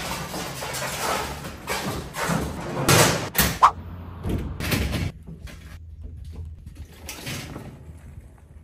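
Metal mesh loading ramp and pickup tailgate clanking and knocking as the ramp is handled, a run of knocks and scrapes loudest around three seconds in, then fainter scattered clicks.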